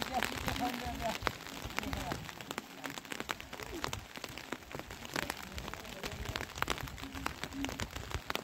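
Rain falling on the camp, with many sharp drop ticks close by over a steady hiss. Faint voices come and go in the background.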